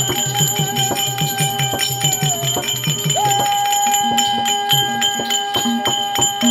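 Therukoothu accompaniment music. A reed or wind instrument holds one long high note that sags and breaks off about halfway, then comes back in on a rising scoop. Under it a drum beats about five strokes a second through the first half, while small bells and cymbals jingle.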